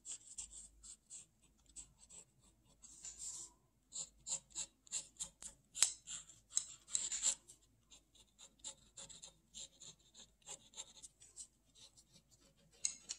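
Pen scratching across paper in many short, quick, irregular strokes, as lines are scribbled in.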